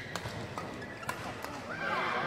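Badminton rally heard live from the stands: a few sharp cracks of rackets striking the shuttlecock and players' shoes on the court, over a murmur of crowd voices. Near the end the crowd noise swells into a reaction.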